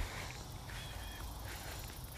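Quiet outdoor background: a faint steady low rumble and hiss, with a few faint short high chirps.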